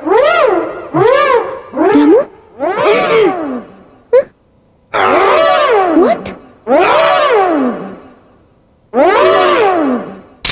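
A run of long wailing cries, each sliding up and then back down in pitch, roughly one a second, with a short quiet gap a little before the middle.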